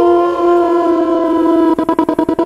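Loop-station music: several layered, held droning tones sounding together, which near the end switch to a fast rhythmic chopping of about eight pulses a second.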